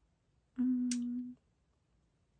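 A woman humming a single steady "mmm", under a second long, with a brief sharp click partway through.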